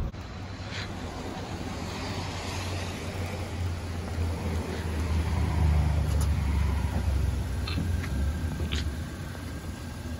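Low engine rumble of a Kia Soul in a parking space on a wet street, swelling for a couple of seconds in the middle, then a few sharp clicks near the end as its doors are opened.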